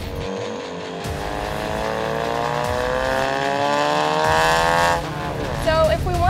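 2015 Ford Mustang's 2.3-litre EcoBoost turbocharged four-cylinder, running an uncatted Borla 3-inch downpipe and Borla ATAK cat-back exhaust, accelerating hard: a very loud exhaust note climbs steadily in pitch and volume for about five seconds, then drops off abruptly.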